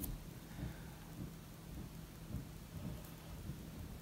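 Quiet handling noise: soft, dull low bumps and faint rustle as hands wrap yarn around a knitting needle, over a low steady hum.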